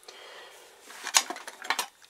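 A faint rustle, then a quick run of small clicks and clinks about a second in, as the leather case half of a vintage SLR camera, with its metal tripod screw, is set down against the camera body.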